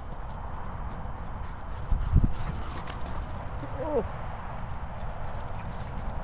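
Dog's paws pounding the turf as an English Pointer gallops past, over a low rumble of wind on the microphone. A loud thump comes about two seconds in, and a short pitched call a little before the two-thirds mark.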